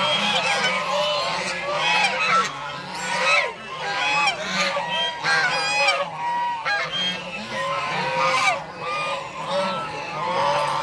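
A flock of domestic white geese honking, many short calls overlapping without a break.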